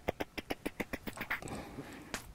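Beatboxer's rapid vocal pulses into a handheld microphone, slowing and fading out over the first second and a half as the routine winds down.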